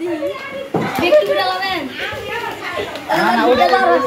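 Several children shouting and squealing excitedly as they scramble over a sheet of bubble wrap, with a couple of sharp clicks about a second in.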